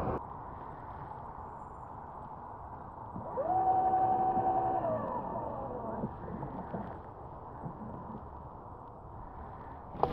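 Bow-mounted electric trolling motor whining up to speed about three seconds in, running steadily for about a second, then winding down, over a steady low background rumble.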